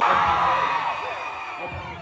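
Concert audience of fans screaming and cheering, a loud burst of many high voices at once that slowly dies down.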